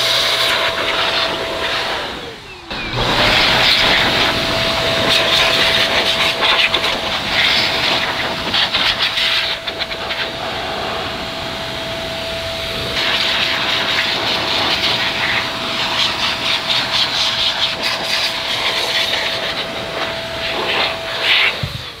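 XPower handheld electric air duster blowing dust out of a computer case: a steady motor whine over a rush of air. It shuts off about two seconds in with the whine falling, starts again a second later, and runs until just before the end.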